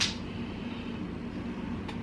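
A spoon clicks once against a metal saucepan as it scoops tomato sauce, over a steady low room hum; a faint tick follows near the end.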